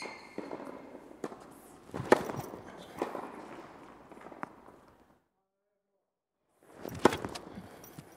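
Tennis ball and racket on an indoor hard court during a slice-serve demonstration: a few sharp pops from the ball being bounced and struck, each echoing in the hall.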